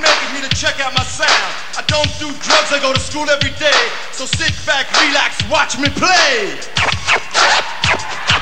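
Hip hop music: a drum beat with a low thump about every half second, and turntable scratching sweeping up and down in pitch over it.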